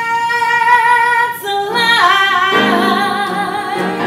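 A woman singing live, holding two long notes with vibrato, the second higher, over keyboard accompaniment.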